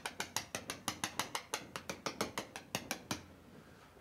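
Chalk tapped rapidly against a blackboard as dots are stippled inside a drawn box to stand for gas molecules: a quick, irregular string of sharp taps, about six a second, that stops about three seconds in.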